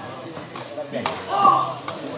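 Crowd chatter around a sepak takraw court, with a sharp kick of the takraw ball about a second in, followed at once by a loud shout; another short hit comes near the end.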